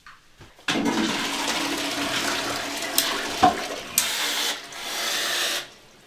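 Wall-hung toilet with a concealed cistern flushing: the water rush starts suddenly under a second in, runs for about five seconds with a few sharp clicks, and stops abruptly near the end.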